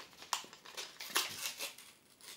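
Faint rustles and clicks of plastic packaging being handled: a few short, separate strokes as a small eyeglass cleaner is unwrapped.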